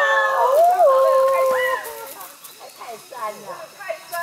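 Several people giving long, drawn-out yells with wavering pitch, the voices overlapping; they stop about two seconds in, leaving fainter voices.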